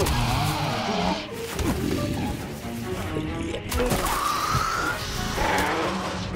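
Film soundtrack music mixed with action sound effects: crashes and the cries of attacking winged creatures.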